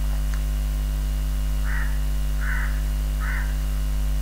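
A steady low electrical mains hum, with three short, harsh calls evenly spaced in the background in the second half.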